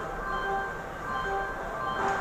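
Railway station public-address chime: a series of ringing electronic notes, about half a second apart, that signals a train announcement is about to follow.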